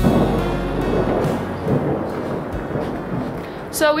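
A clap of thunder that breaks suddenly, then rumbles and fades away over about three seconds, heard during a hail and rain storm.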